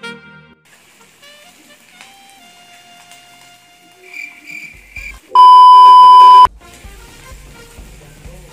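A loud, steady, high-pitched electronic bleep lasting about a second, cutting in a little past the middle over quiet background music; after it the music carries on with a low regular beat.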